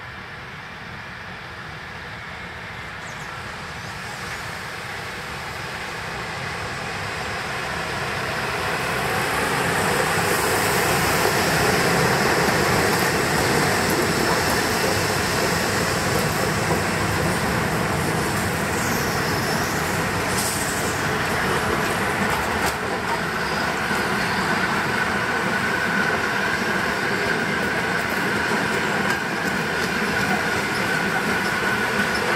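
A train headed by a group of E94 'Krokodil' electric locomotives approaches and runs past at close range, its coaches rolling by on the rails. It grows louder over the first ten seconds and then stays steady, and a thin wheel squeal comes in near the end.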